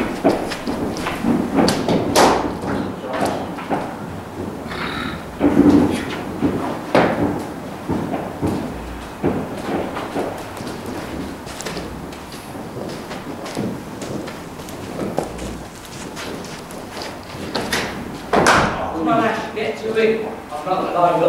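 Cricket bat striking a ball in an indoor net, two sharp cracks about two seconds in and near the end, among softer thuds and voices echoing in a large hall.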